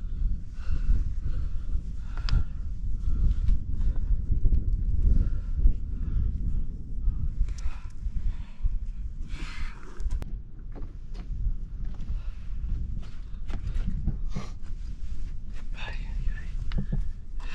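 Scuffs and knocks of shoes and hands on rock as a hiker down-climbs a rocky crack, over a steady low rumble on the camera's microphone.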